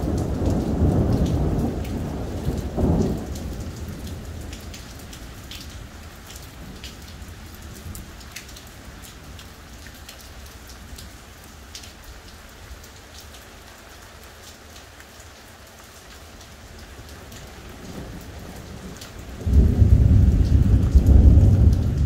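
Thunderstorm: a rumble of thunder fades away over the first few seconds, leaving steady rain with scattered drips. Near the end a loud new peal of thunder breaks in suddenly and carries on.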